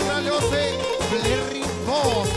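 Live Balkan folk dance music: a wavering, ornamented lead melody over a steady, pulsing beat.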